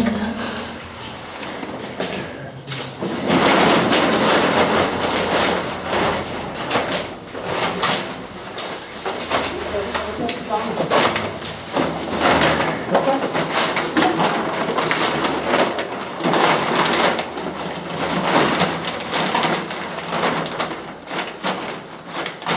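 Footsteps on loose rubble, then rustling and scraping of clothing and a plastic sheet as a person crawls through a low opening, in irregular bursts of crackling noise.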